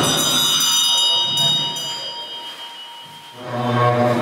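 Tibetan Buddhist ritual music: a sudden percussion hit at the start, then bells ringing on and fading away over about three seconds. A deep, steady droning tone comes in near the end.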